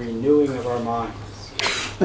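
A man speaking in Japanese for about the first second, then a short hiss near the end.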